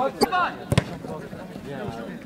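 A football kicked once, a single sharp thud about three-quarters of a second in, with men's voices around it.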